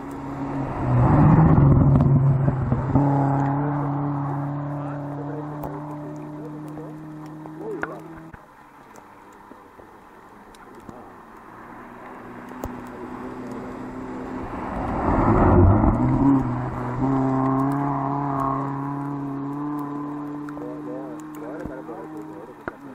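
Two rally cars pass one after the other on a snowy stage. Each engine swells to its loudest as the car goes by, about a second and a half in and again about fifteen seconds in, with a rush of tyres through snow, then holds a steady note as it drives away.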